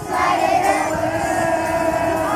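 A crowd of young children's voices shouting out together as their song ends, a loud burst for under a second, then breaking into loose chatter.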